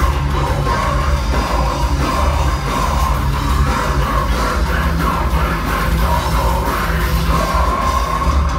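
A live technical deathcore band playing at full volume: heavily distorted guitars and drums under harsh screamed vocals, recorded from within the crowd.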